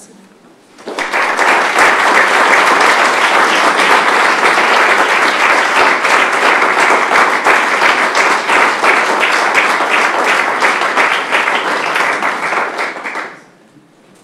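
Audience applauding, a dense run of many hands clapping that starts about a second in and dies away shortly before the end.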